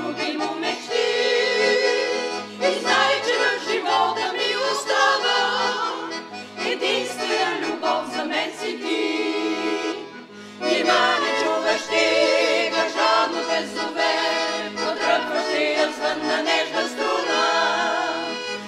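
A small mixed vocal group, mostly women's voices, singing a song together to piano accordion accompaniment, the accordion's bass keeping an even, repeating pattern underneath. The singing eases briefly about ten seconds in, then comes back in full.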